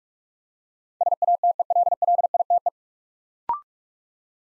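A single-pitch Morse code tone sends the word 'satellite' at 45 words per minute, a fast run of dits and dahs lasting under two seconds. About a second later comes a short click-and-blip courtesy tone that steps up in pitch, signalling that the word is complete.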